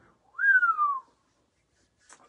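A man whistles once, a short note that jumps up and then slides down in pitch over under a second, in appreciation of the sauce's taste and heat.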